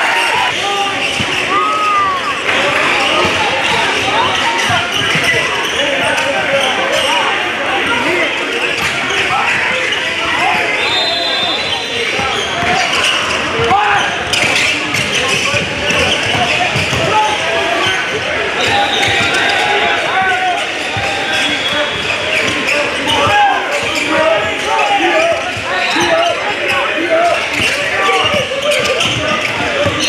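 Game sound from a youth basketball game on a hardwood gym court: the ball bouncing as it is dribbled, sneakers squeaking on the floor, and players and spectators calling out over a steady background of voices.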